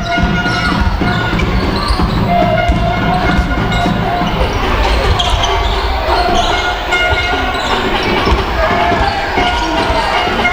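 A basketball being dribbled on a hardwood court during live play in a gym, with shouts from players and the crowd around it.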